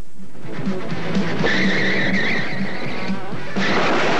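Movie soundtrack of a car chase: music with a long tyre squeal from about a second and a half in until about three seconds in, then a louder rush of vehicle noise near the end.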